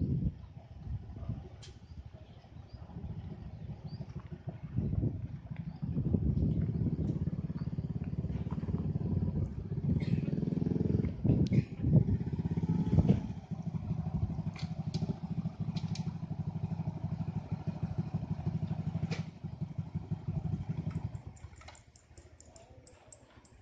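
A small engine, most likely a motorcycle's, running steadily at idle from about six seconds in and cutting off about a second before the end, with a few brief knocks and clatters over it.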